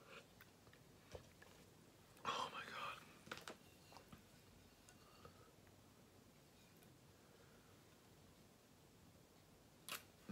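Mostly near silence, with small mouth and handling sounds from a person drinking from a glass: a short breathy noise a little after two seconds and a few faint clicks.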